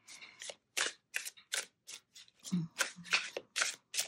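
A deck of oracle cards being shuffled by hand, overhand: an irregular run of short, crisp card snaps, about three a second.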